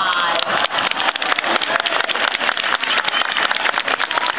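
Audience clapping: many overlapping hand claps in a dense, irregular patter.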